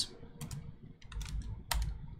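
Typing on a computer keyboard: a short, uneven run of separate keystrokes over two seconds, the loudest near the end.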